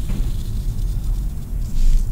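Steady low background rumble with a faint hiss and no distinct event, with a brief soft hiss near the end.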